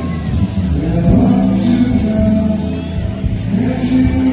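Amplified music from an outdoor concert stage, heavy in the bass.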